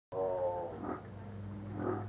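A man's voice drawing out one syllable for under a second, then two short voiced sounds, over a steady low electrical hum.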